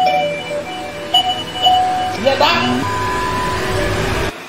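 Electronic doorbell chime rung over and over, each press starting a new two-note chime. A man's angry shout cuts in a little past two seconds in.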